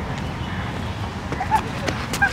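Outdoor ambience: a steady low rumble with people's voices, and a few short chirps and sharp clicks in the second half.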